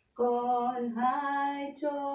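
A woman singing a Christian worship song unaccompanied, in long held notes. She comes in after a brief pause, steps up in pitch about halfway through, and breaks off briefly near the end.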